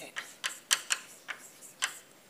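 Chalk clicking against a blackboard while a word is written, an irregular run of sharp taps.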